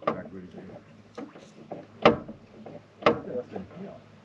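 Sharp clicks and knocks of small parts being handled at an engine bay's fluid reservoir: one at the start, one about two seconds in and another a second later, with faint handling rustle between.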